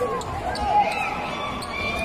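Basketball bouncing on the court, a few sharp taps, over the voices of the crowd in the hall.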